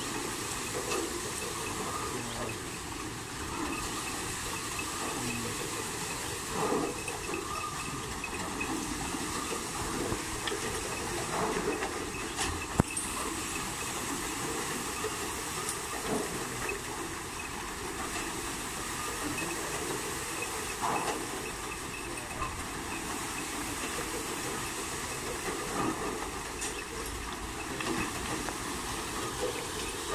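A bull-driven Persian wheel turning fast over a well: a steady hiss with the clatter of its gearing and a few sharp knocks.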